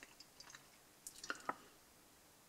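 Quiet room with a few faint, short clicks scattered over two seconds, the clearest three about a second to a second and a half in.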